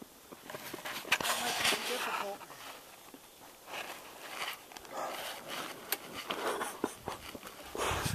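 Faint, indistinct voices over an uneven rustling noise.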